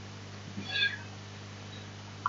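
A brief, high-pitched cry about half a second in, over a steady low hum.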